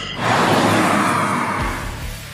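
A car passing at speed: a loud rush of road and engine noise that fades away over a second or so. A music beat comes in near the end.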